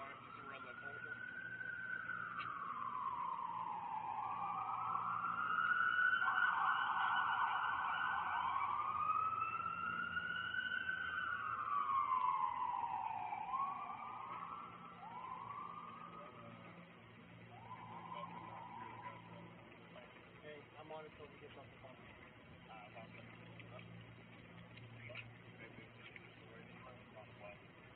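Emergency vehicle siren wailing in slow rising and falling sweeps that grow louder over the first dozen seconds. Then come a few short rising whoops, and it fades away.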